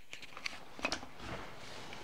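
Faint handling noise: a few light clicks in the first second, then a soft rustle.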